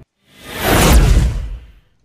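Whoosh transition sound effect: after a moment of silence, one swell of rushing noise builds for about half a second, then fades away over the next second.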